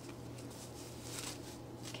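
Faint rustling of cloth as a fabric doggie diaper cover with velcro flaps is handled and pulled off, over a low steady hum.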